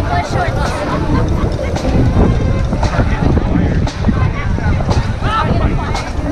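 Wind buffeting the camera's microphone in a steady low rumble, with the chatter of people walking close by.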